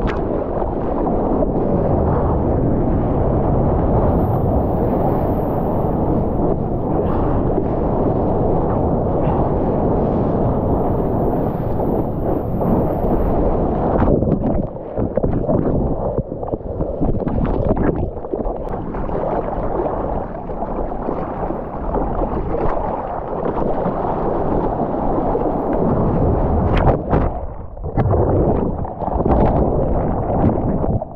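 Water rushing and spraying past a surfboard-mounted action camera during a wave ride, a loud steady wash. About halfway through it breaks up into uneven surges and dropouts as the camera is tumbled through the churning whitewater and under the surface of the breaking wave.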